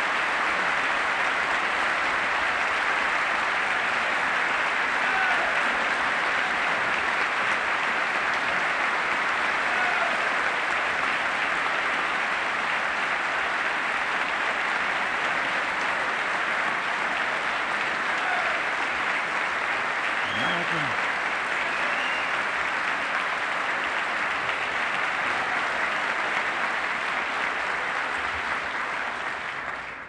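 A large audience applauding steadily for about half a minute, with a few voices calling out now and then. The applause dies away near the end.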